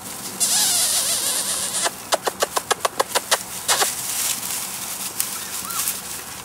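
Rustling and scuffing in dry grass and straw close to the microphone, with a quick run of about ten sharp clicks in the middle.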